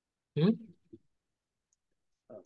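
A man's short questioning "hmm?", then silence, with the call audio cut to nothing between sounds.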